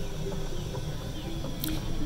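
Golf cart driving along, a steady low rumble of motor and tyres, with faint music playing in the background.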